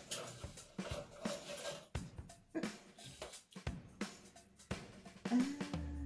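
A plastic gold pan being worked in a tub of water, giving irregular knocks and light splashes, with music playing faintly underneath.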